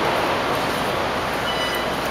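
Steady city street noise, a continuous even rush, with a brief faint high squeal about one and a half seconds in.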